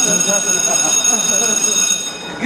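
A shrill electric bell, a school-bell sound effect, rings steadily for about two seconds and cuts off suddenly.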